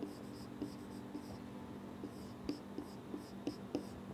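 Marker pen writing on a whiteboard: faint, short squeaks and taps of the felt tip as each stroke is drawn, under a steady low room hum.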